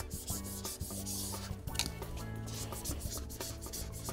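A squeegee rubbing over vinyl auto body wrap as it is smoothed onto a drum shell, a continuous run of short irregular strokes that push the air bubbles out.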